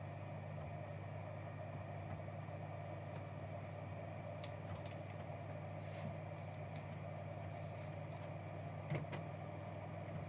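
Faint handling of a trading card being slid into a clear plastic penny sleeve and a rigid plastic top loader: a few light clicks and rustles, with a small knock near the end, over a steady low room hum.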